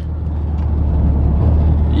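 Car cabin noise while driving on a highway: a steady low rumble of engine and road noise, rising slightly in level over the two seconds.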